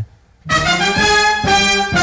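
A brief pause, then about half a second in, music comes in with brass instruments playing held notes that change about every half second.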